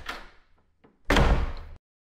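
Logo intro sound effect: a swish fading away at the start, then about a second in a loud, deep hit that dies away over most of a second and cuts off sharply.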